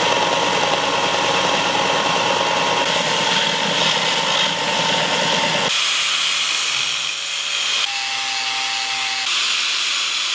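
Bench belt sander's electric motor running steadily. About six seconds in, after a cut, comes an angle grinder grinding the steel blade of a large cleaver, with a thin high whine over the grinding.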